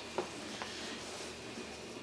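Quiet room tone, a faint steady hiss, with one short faint click just after the start.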